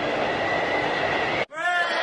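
Steady, loud rushing roar of an airplane in flight, a sound effect for the paper plane, cut off sharply about one and a half seconds in. Sliding tones of music begin just after.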